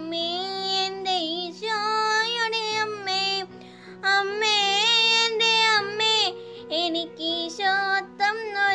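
A young girl singing solo, holding long melodic notes with short breaths between phrases, over a steady low instrumental accompaniment that changes chord every second or two.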